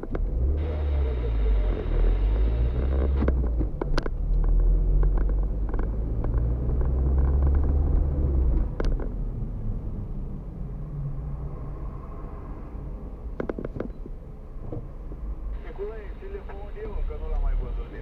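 Car engine heard from inside the cabin, accelerating as the car pulls away and climbing in pitch for about eight seconds with a couple of shifts, then dropping back to a quieter run as the car eases off.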